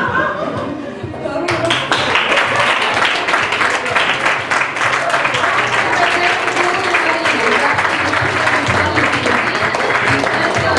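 Audience applauding over background music. The clapping starts about a second and a half in, after a moment of voices.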